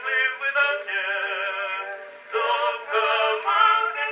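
Edison cylinder phonograph playing a Blue Amberol cylinder through its horn: an acoustic-era vocal recording, with a singer holding long notes with vibrato. The sound is thin and has no bass. A held note about a second in falls away just after two seconds, and then the singing picks up again.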